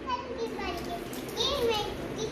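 A young child's high-pitched voice talking in short phrases, louder about three quarters of the way through.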